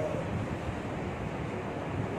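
Steady rushing background noise, with no voice and no distinct events.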